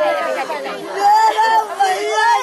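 Several women wailing and crying in grief, their voices overlapping, with drawn-out, arching cries about a second in.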